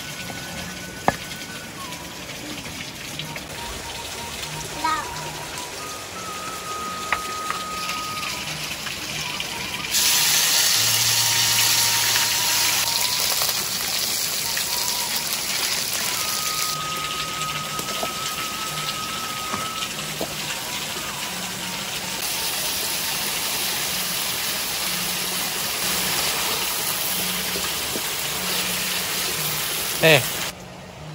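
Background music with light sustained tones; about ten seconds in, a loud steady hiss of spice paste sizzling in hot oil in a wok comes in and carries on under the music.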